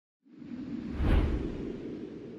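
Logo-reveal whoosh sound effect. It swells in, peaks with a deep boom about a second in, then trails off slowly.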